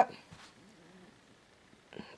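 Near silence: faint room tone after a spoken word ends at the very start.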